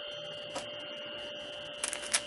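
A steady electrical hum with a few fixed whining tones, with a faint click about halfway through and a few short clicks near the end.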